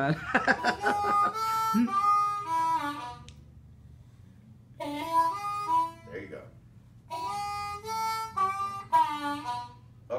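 Diatonic blues harmonica played by a student in three short phrases of single notes, some of them bent so the pitch slides, as a bending exercise on the number two hole.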